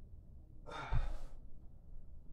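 A person exhaling hard, a sigh of about a second, while letting go of a bent-leg core hold with a dumbbell, with a dull thump at the same moment.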